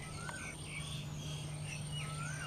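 Faint background birdsong: several birds giving short whistled chirps, some rising and then falling, over a thin steady high tone and a low steady hum.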